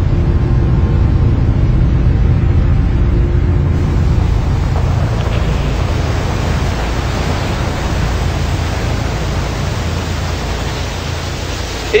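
Steady rushing noise of a large waterfall, deep and even, with faint steady tones underneath in the first few seconds.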